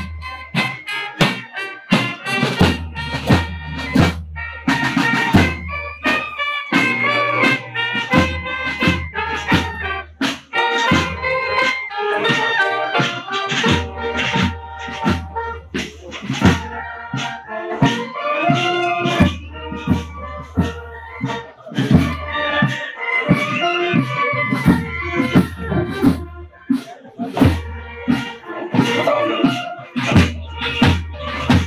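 Military brass band of the Senegalese Gendarmerie Nationale playing a march on the move: trumpets, bugles and low brass carry the melody over a steady, regular beat.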